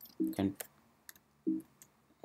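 A handful of light keystroke clicks on a computer keyboard, spread across the moment between short bits of speech.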